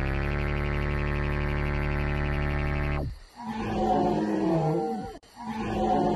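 A sustained, buzzy synthesizer tone that cuts off suddenly about three seconds in, then a roaring sound effect heard twice in a row.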